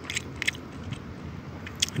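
A person chewing a mouthful of smoked fish: a few short, soft mouth clicks over a steady low background.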